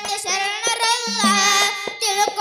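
A boy singing a Kannada devotional bhajan, his voice gliding and wavering over held harmonium notes, with sharp hand-drum strokes keeping the beat.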